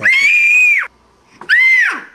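A toddler squealing twice in a very high voice: a long held squeal that drops away at its end, then a shorter one that rises and falls.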